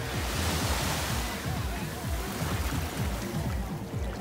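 Background music with small waves washing onto a sandy shore; the surf is loudest in the first second or two.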